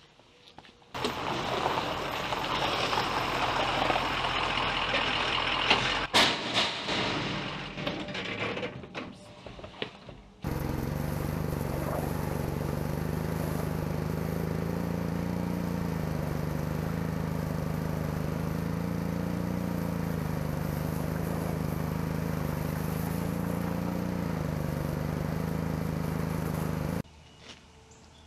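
Pressure washer running with a steady hum and the hiss of its spray, rinsing self-etching metal prep off a steel trailer frame; it starts abruptly about ten seconds in and stops about a second before the end. Before it comes a few seconds of louder rushing noise, then a few knocks.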